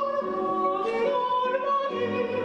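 A countertenor singing a long, high held note, accompanied by a quartet of classical guitars plucking notes beneath the voice.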